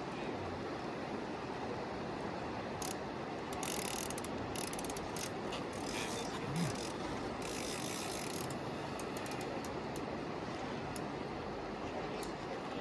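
Large conventional fishing reel ratcheting under the load of a hooked white sturgeon, with clusters of rapid clicks from the reel's gears and clicker in the middle of the stretch, over a steady bed of river and wind noise.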